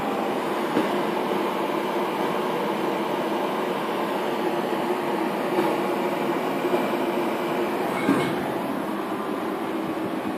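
Steady hum and rush of workshop machinery, with a faint held low tone and a few light knocks spaced through it.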